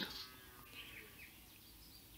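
Faint room tone with a few faint, short, high chirp-like sounds.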